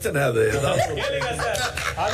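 A man's voice chuckling while talking, with laughter from other people.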